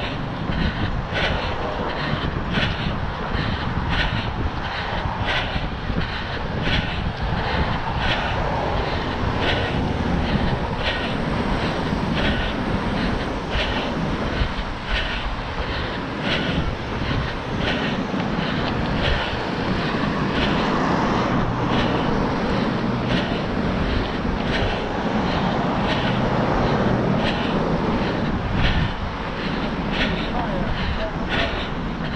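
A runner's regular footfalls on a concrete sidewalk, heard as an even series of short slaps, over a steady rumble of wind on the microphone and road traffic.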